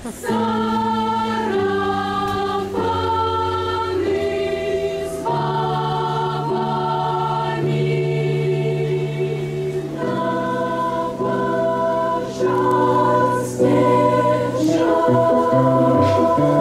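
A children's choir singing a slow song in held chords that change every second or so, growing louder in the last few seconds.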